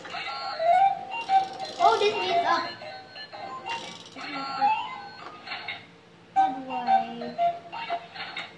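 Battery-powered toy claw machine playing its electronic jingle, a run of short steady notes, while its claw is being worked.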